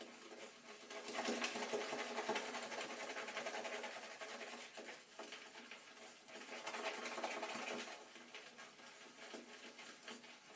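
Synthetic-knot shaving brush whisked rapidly around a lathering bowl, building a lather from shaving soap: a fast, wet, rhythmic swishing. It comes in two louder spells, easing off in the middle and again near the end.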